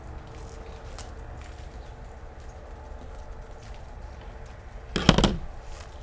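Scissors chopping into a dense, root-bound root ball: faint crackles over a low steady hum, then a short, loud cluster of crunching cuts about five seconds in.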